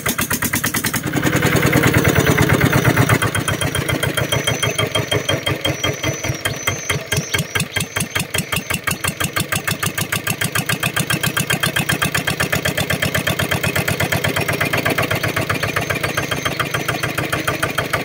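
Kubota ER65 single-cylinder diesel engine running through a short straight stainless exhaust pipe, with a steady pop-pop exhaust beat. It is opened up and runs louder for about two seconds shortly after the start, then settles back to an even idle.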